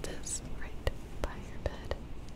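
Soft whispering close to the microphone, with a few sharp little clicks through it.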